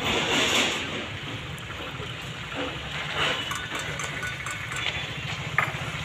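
An engine idling, a low steady throb, with people talking in the background.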